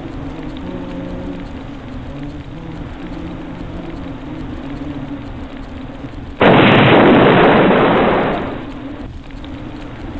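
An explosion sound effect: a sudden loud burst of noise about six seconds in that dies away over about two seconds. Before it runs a low steady background with a few held, changing tones.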